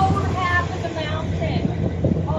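Indistinct voices talking over the steady low hum of a vehicle's engine, heard from aboard an open-sided vehicle while it runs.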